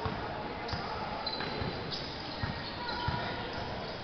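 Basketball being dribbled on a gym court, a series of low bounces, over the chatter of a crowd in a large hall.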